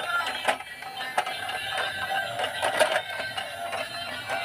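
A battery-powered dancing toy police car playing its electronic tune as it drives, with a few sharp plastic clicks from the toy.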